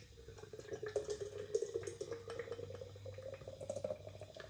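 Camden Stout nitro draught can being poured upended into a pint glass: beer splashing and fizzing into the glass, with a faint tone that climbs slowly as the glass fills.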